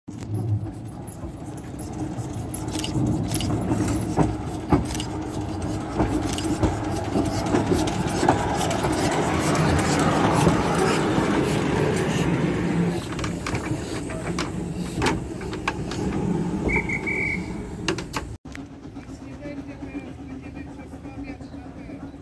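Narrow-gauge steam locomotive passing close by: a swelling rush of steam and running noise that peaks midway and fades, with metallic clanking and clicking from the running gear and rails. A brief high squeal comes a little before a sudden cut to quieter crowd chatter.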